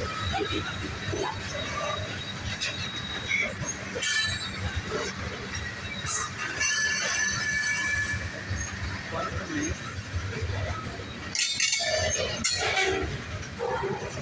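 Freight train of tank cars rolling past at close range: a steady rumble of steel wheels on rail, with thin, intermittent wheel squeals.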